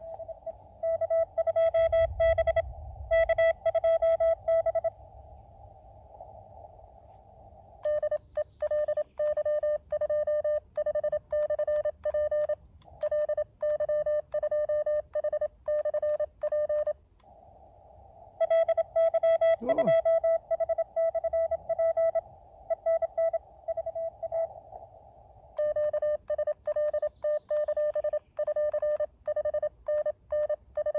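Morse code (CW) on an Elecraft KX2 transceiver: one steady tone keyed on and off in several runs of dots and dashes during an exchange of calls and signal reports. Between the runs there is the hiss of the radio's narrow CW filter.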